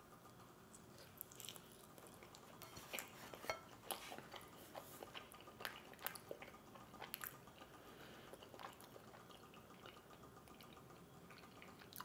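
Faint, irregular clicks and ticks of someone chewing a bite of a slightly cold, stiff slice of cheese pizza.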